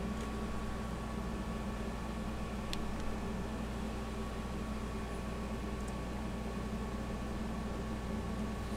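Steady background hum and hiss of room noise, with a faint steady tone in it and a single faint click a little under three seconds in.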